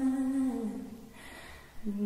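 A woman's recorded singing voice holds a soft, low, hum-like note that slides down in pitch and fades away about halfway through. After a short lull, the voice comes back in near the end.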